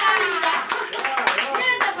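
A small group clapping their hands over lively, excited voices.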